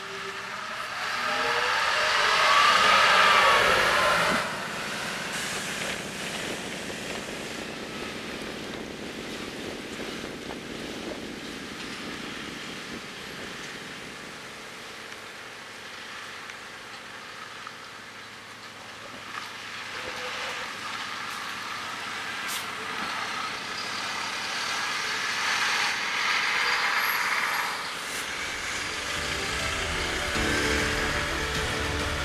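Isuzu Erga diesel city bus, fitted with an Allison automatic transmission, driving past close by. Its engine and transmission whine glide in pitch and are loudest about two to four seconds in. An Isuzu Gala HD coach's diesel engine then approaches and passes, growing louder again late on, about 24 to 28 seconds in.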